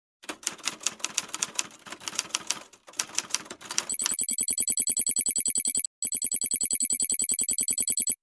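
Animated intro sound effects: irregular typewriter-like key clacks, then from about four seconds a fast, even ticking with a high ringing tone over it. There is a brief gap about six seconds in, and it cuts off suddenly at the end.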